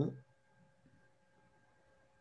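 Near silence over a video call: the last trace of a spoken word in the first instant, then only faint steady tones. The observatory dome's motor noise does not come through the call's noise suppression.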